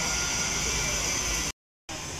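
Steady outdoor background noise, a hiss over a low rumble with no clear voices, that cuts off abruptly to a brief dead silence about a second and a half in.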